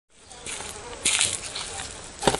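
An insect buzzing close by, with a brief louder burst about a second in.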